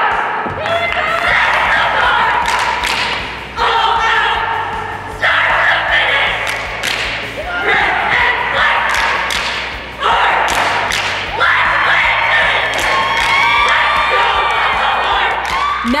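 A high school cheer squad shouts a cheer in unison, in about five phrases with short breaks between them. Sharp thuds from stomps and claps land among the phrases.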